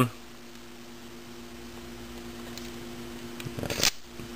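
Small open flame, likely a lighter, hissing faintly as heat-shrink tubing is shrunk over a soldered wire lead, over a steady low electrical hum. A short burst of clicks and rustling comes near the end.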